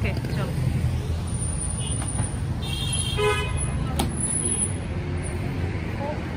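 Road traffic noise: a steady low rumble of car engines, with a short car horn toot about three seconds in.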